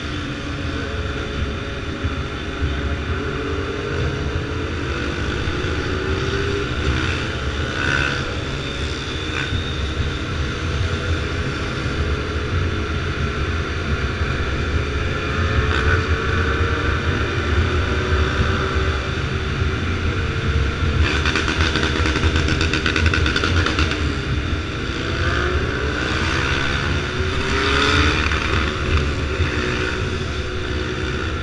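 BMW F800R's parallel-twin engine running under way, its pitch rising and falling several times with the throttle, over steady wind rush on the microphone.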